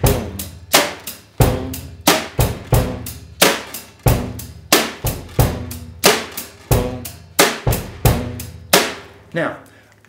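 Drum kit playing a basic rock beat: steady eighth notes on the hi-hat, snare drum on beats two and four, and bass drum on one, the 'and' of two, and three. The beat stops about a second before the end.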